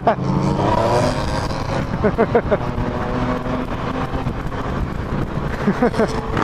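A nearby car's engine and exhaust revving up, its note rising in the first second or so; it sounds terrible. Motorcycle engine and wind noise run underneath.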